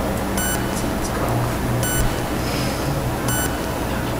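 A steady low hum with background hiss, and a faint high electronic blip about every second and a half.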